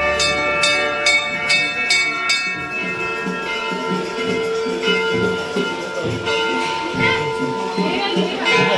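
Brass temple bells being rung by hand. A quick run of strikes, about three a second, for the first two seconds or so, then scattered single strikes, each leaving a long ringing tone.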